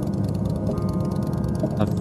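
Steady low rumble of a motorcycle's engine and road noise while riding, with soft background music over it.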